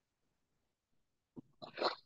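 Near silence, then a small click and a man's short breathy vocal sound near the end, as he draws in to speak.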